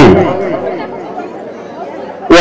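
A man's amplified voice through a microphone cuts off at the start and fades away, leaving faint chatter of people in the hall.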